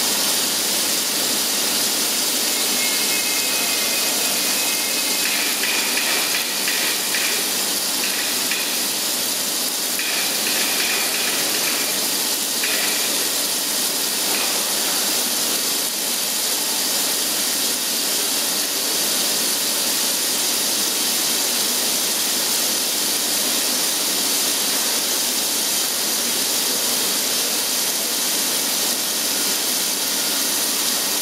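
CNC machining centre milling Hastelloy X nickel superalloy with an end mill under jets of coolant: a steady rushing hiss of the running spindle, the cut and the spraying coolant. A faint high whine comes and goes during the first half.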